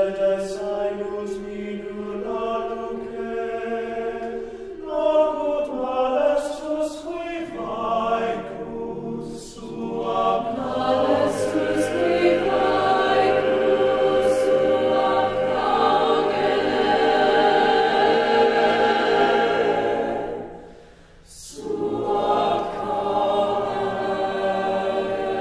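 Mixed-voice choir of men and women singing a cappella in sustained chords. The chords swell into a full, loud passage in the middle, break off briefly near the end, then come back in.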